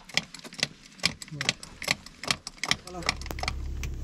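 Sharp, irregular clicks and clinks, several a second, as of metal parts being handled at a car wheel. A voice is heard briefly in the second half, and about three seconds in a low steady hum sets in.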